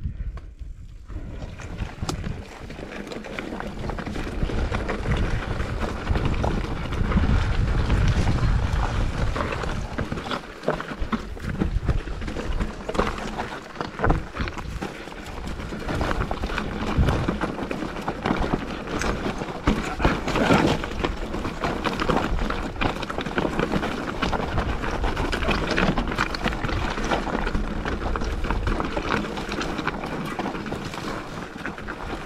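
Mountain bike riding down a rocky trail: wind buffeting the camera microphone with a low rumble, over a constant clatter of tyres on loose stones and the bike rattling over rocks. It builds up over the first few seconds as the bike picks up speed.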